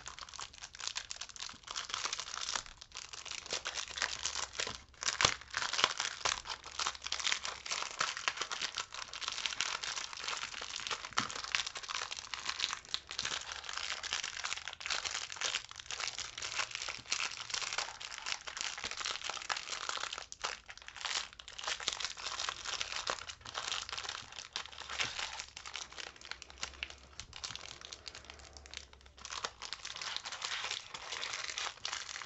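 Thin plastic packaging crinkling continuously as hands unwrap and handle it, a dense run of small crackles with a few louder snaps around five to six seconds in.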